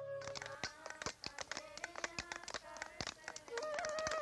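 Small hand hammers breaking bricks and stones: many quick, irregular taps of several hammers, faint.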